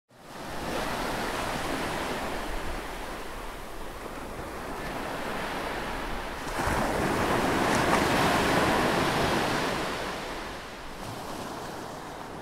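Rushing, surf-like noise with no voice or tune in it. It swells about six and a half seconds in and eases off near the end.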